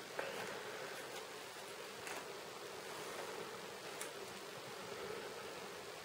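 Faint steady hiss of room noise, with a couple of soft ticks and rustles of a washi-tape sticker being handled and pressed onto a paper planner page.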